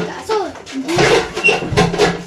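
Several sharp knocks and clatter of objects being put away, one at the start, one about a second in and one near the end, with a short sliding vocal sound in between.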